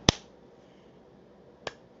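A sharp click just after the start and a second, fainter click about a second and a half in, over quiet small-room tone.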